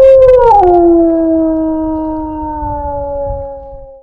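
A wolf howl sent out through a hand-held megaphone as the call of a wolf-howling survey, meant to draw replies from wild wolves. One long howl holds its pitch, drops suddenly to a lower note about half a second in, then sinks slowly and fades away toward the end.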